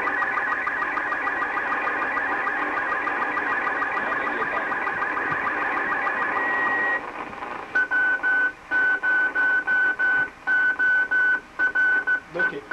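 Slow-scan television signal from the Space Shuttle Challenger coming through an amateur radio receiver's speaker: a fast, warbling chatter of high tones as the picture data arrives. About seven seconds in, it gives way to a single steady tone that keeps cutting in and out, about ten times in four seconds.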